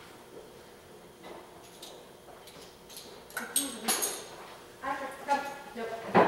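Sharp metallic clicks and clinks as a weight-pull harness is clipped to the cart, followed near the end by a short pitched vocal sound.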